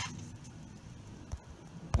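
Quiet handling on a tabletop with two light clicks, one partway through and a sharper one near the end: small broken pieces of a refrigerator PTC start relay's ceramic disc being set down.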